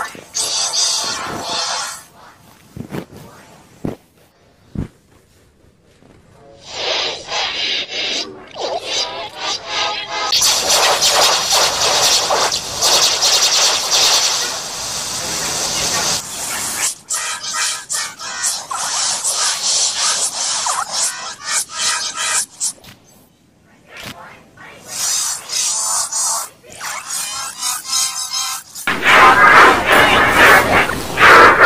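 Heavily effect-processed audio in the 'G Major' meme style: music and voice from a clip played as layered, pitch-shifted copies, cutting in and out. It is quiet from about two to six seconds in, with a short gap a little before three-quarters of the way through, and loudest near the end.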